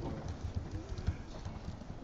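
A pause in a man's talk: quiet room tone with a few faint low taps or knocks.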